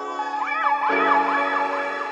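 Background music: sustained synth chords that change about a second in, with a high melody line gliding quickly up and down over them.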